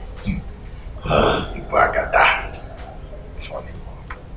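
A man laughing softly in a few short breathy bursts, about a second in and again around two seconds, over a low room hum.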